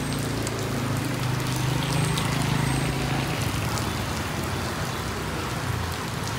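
Steady, heavy rain falling on a wet street and pavement: a continuous hiss of drops. A low hum runs under it through roughly the first half.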